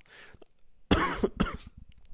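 A man coughing into a close microphone: a sudden loud cough about a second in, followed by a second shorter one.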